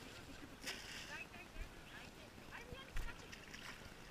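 Faint wind on the microphone and sea water around a small boat, with a couple of soft knocks, the clearer one about three seconds in.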